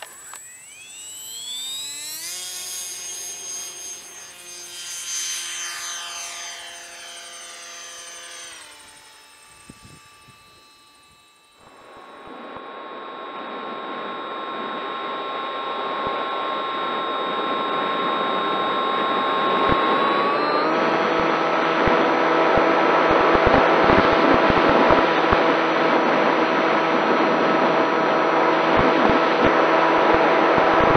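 An electric model plane's brushless motor and propeller whining. The whine rises in pitch as it spins up over the first couple of seconds, holds steady, then winds down after about eight seconds. From about twelve seconds the motor is heard in flight under rushing wind on the onboard camera's microphone; it steps up in pitch about twenty seconds in and grows louder.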